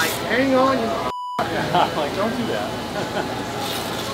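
Background chatter: several people's voices talking over one another, not close to the microphone. The sound drops out briefly just over a second in.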